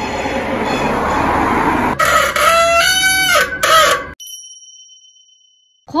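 Bicycle disc brake squealing under braking, preceded by rolling and wind noise: a loud, high, wavering squeal of about a second and a half, then a short second squeal, before it fades out. The squeal is friction noise from the pads vibrating against the rotor, common to disc brakes.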